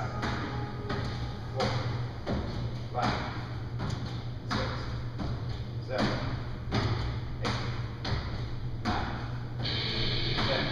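Repeated box jumps onto a plyo box with a plate on top: a run of landing thuds, about one every three-quarters of a second, over a steady low hum.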